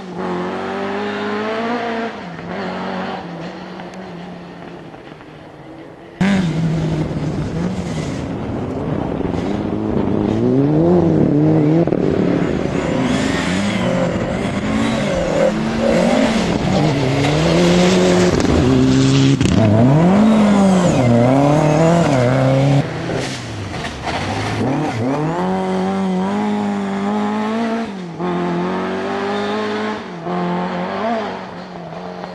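Rally car engines being driven hard, the pitch climbing and dropping again and again with the revs and gear changes. In the first seconds one car fades into the distance. About six seconds in, a sudden cut brings in a much louder car revving repeatedly as it works through a stage.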